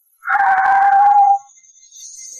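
A car horn sounding one steady blast of about a second.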